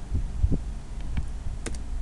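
Computer keyboard keys tapped a few times, sharp clicks in the second half, over a steady low hum broken by soft low thumps.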